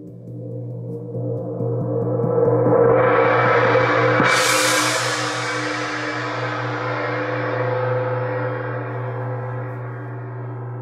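Wind gong played with a gong mallet: a run of soft strokes warms it up so its ringing swells gradually. About four seconds in, a firmer stroke opens it into a bright shimmer that rings on and slowly fades.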